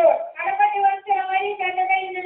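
A high-pitched voice singing a Christian devotional song in long, drawn-out notes with short breaks between phrases.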